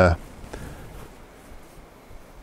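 A man's held 'uh' cuts off right at the start, followed by a faint, steady background hiss with no distinct sound in it.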